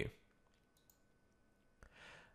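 Near silence, then a couple of faint computer mouse clicks near the end.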